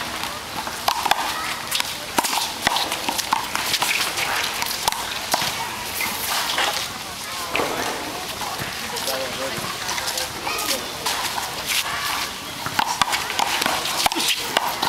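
Sharp slaps of a small rubber handball against the wall and the court, mixed with sneakers scuffing and the players' voices.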